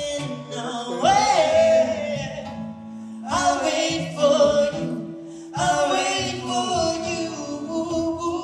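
Live male voices singing long, held wordless phrases over acoustic guitar: three phrases, each starting strongly and then easing off, with the voices wavering in pitch.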